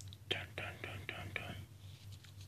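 A person whispering a quick run of quiet, unvoiced syllables, about six in a little over a second.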